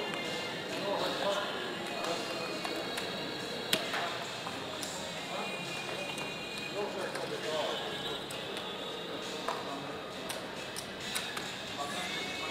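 Casino room ambience: background voices and music, with a few sharp clicks of casino chips being gathered and stacked at a roulette table. The loudest click comes a little under four seconds in.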